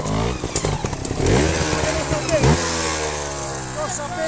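Trials motorcycle engine revving, its pitch climbing and then falling steadily away over the last second and a half.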